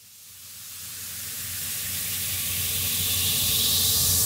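Electronic dance track intro: a white-noise riser swelling steadily louder out of silence, with a faint held synth chord and low note beneath it, building toward the drop.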